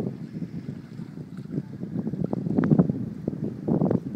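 Wind buffeting a phone microphone, an uneven low rumble that gusts louder for the last second and a half.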